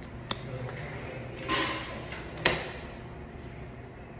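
Close-up sounds of liquid lipstick being applied: a sharp click early, a short breathy rush in the middle, and a louder sharp click about two and a half seconds in, over a steady low hum.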